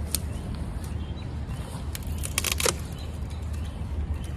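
Long-handled loppers cutting hydrangea canes: a short click just after the start, then a louder cluster of sharp snaps about two and a half seconds in as a cane is cut through.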